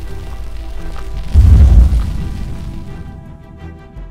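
Cinematic intro music with a deep boom about a second and a half in that rumbles and fades, over sustained musical tones.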